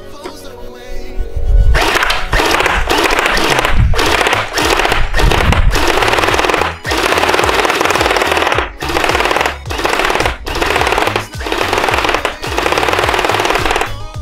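M249 V3 electric gel blaster firing gel balls in long rapid full-auto bursts, its motor and gearbox cycling, with several short pauses between bursts. The firing starts about two seconds in, over background music.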